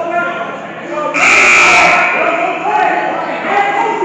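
Voices talking and calling out in a large, echoing gymnasium during a basketball game, with a loud, high-pitched burst lasting under a second a little over a second in.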